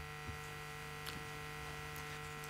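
Steady electrical hum made of several thin, unchanging tones over faint room noise, with a faint click about halfway through.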